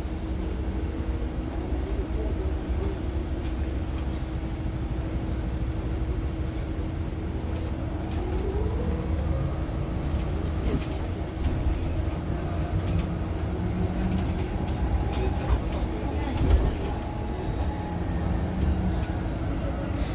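Cabin ride noise of a Mercedes-Benz eCitaro G articulated electric bus: a steady low rumble of tyres and road under a constant hum. The electric drive's whine rises in pitch about eight seconds in as the bus gathers speed, then falls near the end as it slows. A single knock comes about sixteen seconds in.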